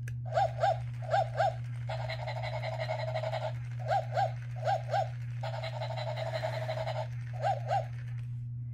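Electronic toy puppy yipping through its speaker in quick pairs of short, high barks, five pairs in all. Two stretches of steady hiss, each about a second and a half, come between the yips. A steady low hum runs underneath.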